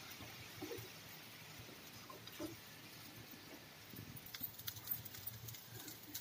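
Faint scraping and soft taps of a spatula stirring and turning seasoned rice in a nonstick frying pan, with small ticks coming more often near the end.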